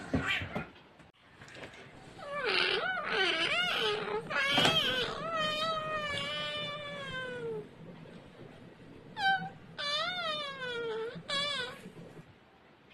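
A cat meowing in a run of drawn-out calls. The longest lasts about three seconds and falls in pitch, and three shorter calls follow near the end.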